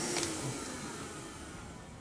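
Steady airy hiss from an air track's blower, fading gradually over the two seconds, with one faint click just after the start.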